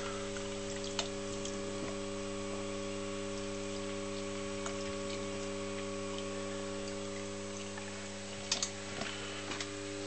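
Steady mains hum from a rewound microwave-oven transformer feeding an HHO electrolysis cell about 25 amps at 12.8 volts, with a few faint clicks near the end.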